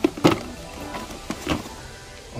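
A cardboard toy box being handled and lifted off a store shelf: a few light knocks and scrapes, over faint background music.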